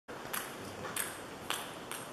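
Celluloid-style table tennis ball bouncing: four light clicks about half a second apart.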